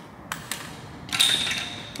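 A hand wrench working on the cylinder head of a Land Rover 200 TDI engine: a sharp metal click about a third of a second in, then a short creak of metal turning under strain in the second half.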